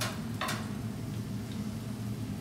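Calzoni frying in the oil of a deep-fat fryer, the oil sizzling softly over a steady low hum. Two sharp clicks come in the first half second.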